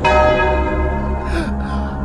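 A deep bell strike at the start, ringing on and slowly dying away over a low sustained drone in the dramatic soundtrack.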